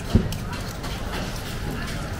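One dull low thump just after the start, over scattered light clicks and clinks of metal utensils and cookware at a busy food stall where egg is being stirred in a metal wok.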